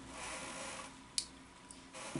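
Quiet room tone with one short, sharp click a little over a second in.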